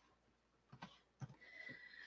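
Near silence with two faint computer-mouse clicks about a second in, advancing the slide.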